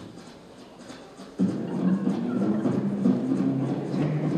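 Vocal mouth-music into a microphone, performed with cupped hands: about one and a half seconds in, a low buzzing bass line starts suddenly, stepping between held notes in the manner of a double bass.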